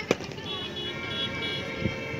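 A sharp knock just after the start, then a steady tooting tone, with its top note pulsing on and off, from about half a second in, over faint voices.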